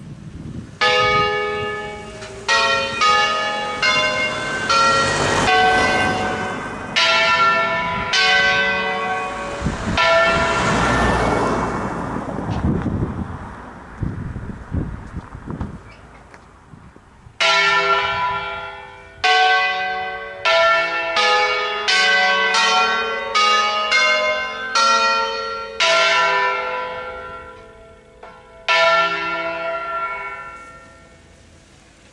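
Church bells rung in concert: tuned bells struck one after another in a melodic sequence, each stroke ringing on. Near the middle a rush of noise covers the bells, then a pause of a few seconds before the strokes return at a quicker pace.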